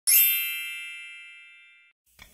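A single bright, bell-like ding, struck once right at the start and ringing out in a smooth fade over about two seconds.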